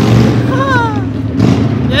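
An excited, high-pitched shout whose pitch rises then falls, over a loud, steady low rumble.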